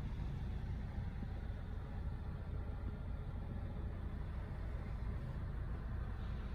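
Low, steady rumble of a 2020 Volvo S60 T6's turbocharged and supercharged four-cylinder engine idling, heard from inside the cabin.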